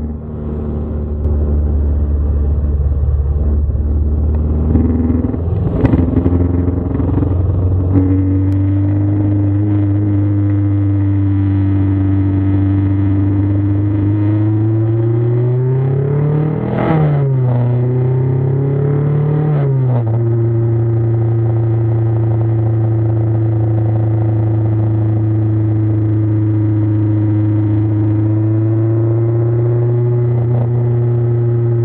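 Car engine heard from inside the cabin, running steadily. About halfway through, its pitch climbs and then drops suddenly, climbs a little and drops again as gears change, then holds steady. A few knocks and rattles come in the first quarter.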